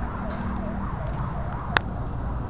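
A distant emergency-vehicle siren in fast yelp mode, rising and falling about two and a half times a second over a steady low rumble of city traffic. The siren fades out about halfway through, and a single sharp click near the end is the loudest sound.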